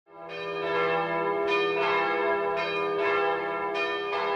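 Intro theme of ringing bell tones over a steady low drone, with a new bell stroke sounding about every half second to a second and each one ringing on into the next.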